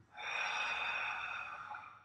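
A man's deep inhale, one long breath lasting about a second and a half that tapers off near the end: the first intentional breath of a guided breathing exercise.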